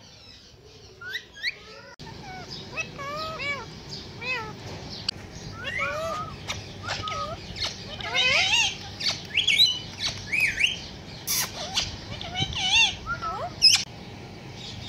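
Several Indian ringneck parakeets chirping and chattering in a quick run of short up-and-down whistled calls. The calls grow busier and louder past the middle, with one sharp loud squawk a little after that.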